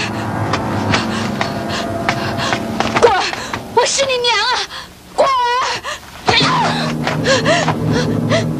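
Dramatic background music with held notes and a few sharp strikes. About four seconds in it gives way to a high voice wailing with a strongly wavering pitch, loudest just past the middle. The music then comes back under further voices.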